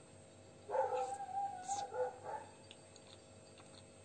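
A high-pitched whine, starting under a second in and lasting about a second and a half, dropping to a lower note near its end, followed by faint soft clicks.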